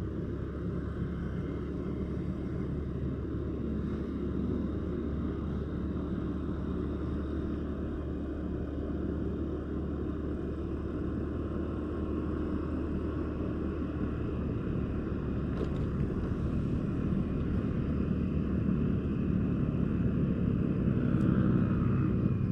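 Steady low engine hum and road noise from a vehicle being driven along a street, growing a little louder near the end.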